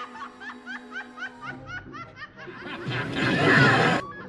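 A woman's villainous laughter, a rapid run of short rising 'ha's, over held dramatic music; the laugh and music swell to their loudest in the last second and a half, then cut off.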